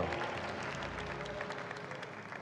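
A congregation clapping in applause, the sound slowly dying down.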